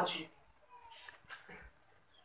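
The end of a word of a woman's speech through a microphone, then a pause in which only faint, brief background sounds are heard.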